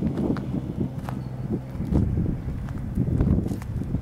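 Footsteps over loose soil and mulch: irregular soft thumps over a low, steady rumble.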